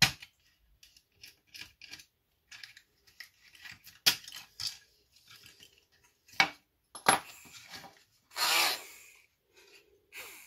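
Hard plastic housing parts of a small nail dryer being handled and pulled apart: an irregular string of clicks, knocks and light clatter, with a longer scraping rub near the end.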